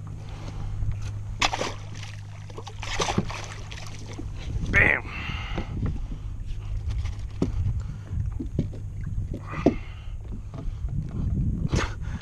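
A flounder being gaffed and hauled aboard a plastic sit-on-top kayak: splashes and repeated knocks of the gaff and the thrashing fish against the hull, over a steady low hum. Brief voice sounds come about five and ten seconds in.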